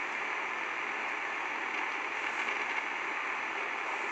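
Steady, even hiss of the recording's background noise, with no speech.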